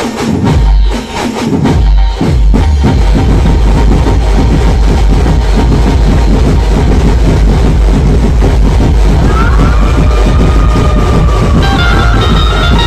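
Loud, bass-heavy procession dance music played by a dhumal band through a large stacked loudspeaker rig. A few separate heavy bass hits come in the first couple of seconds, then a continuous fast beat with heavy bass carries on.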